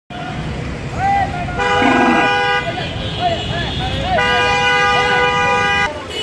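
Vehicle horns honking in street traffic: a steady blast of about a second, then a longer one of nearly two seconds, over traffic noise.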